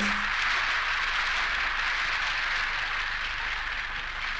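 Audience applauding after a music number ends, a steady patter of many hands that slowly fades.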